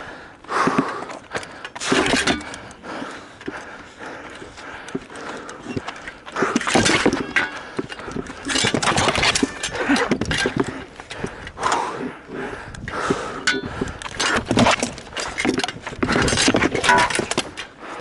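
Irregular knocks, scrapes and rustling from a shield-mounted camera during a sparring bout between gladiators, with blows landing on the shields and some voices in between.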